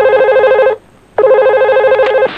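Electronic ringer of a push-button desk telephone trilling: a warbling ring that breaks off about three-quarters of a second in and starts again about half a second later.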